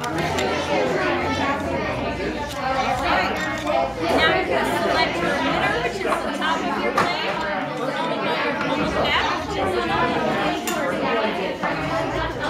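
Overlapping, indistinct chatter of several people in a room, with a few light clicks of small metal parts being handled.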